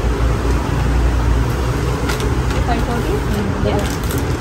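Busy shop background: a steady low rumble with indistinct voices, and a couple of short clicks, one about two seconds in and one near the end.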